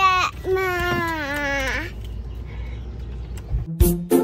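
A toddler girl's voice in a short high sound, then one long drawn-out call without words that drops in pitch as it ends, over low steady background rumble. Music with plucked strings starts just before the end.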